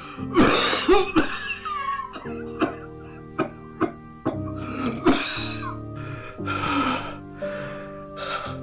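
A man coughing and rasping in several harsh fits, with a few short sharp clicks between them, over soft sustained music chords.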